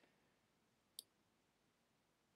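Near silence, broken once about a second in by a single short, sharp computer-mouse click.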